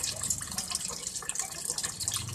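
Water pouring from an aquarium filter's return hose, splashing steadily onto the water surface of the tank.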